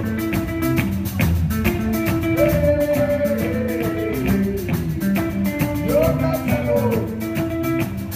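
Live rock band of two electric guitars, bass guitar and drum kit playing a chimurenga song, with repeating guitar lines over a steady drum beat.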